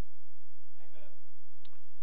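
A pause in speech with a steady low hum: a faint voice murmurs briefly about halfway through, and a single sharp click follows shortly after.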